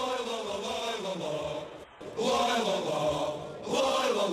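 Male voice chanting a football rallying chant in drawn-out phrases, with a short break about two seconds in before the next phrase.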